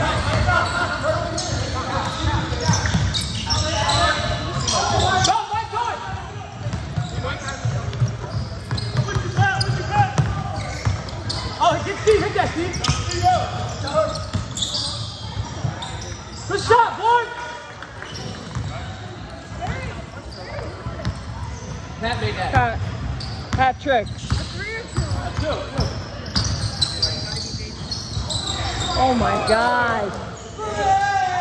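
A basketball dribbled and bouncing on a hardwood gym floor, with players' voices calling out over it, echoing in a large gymnasium.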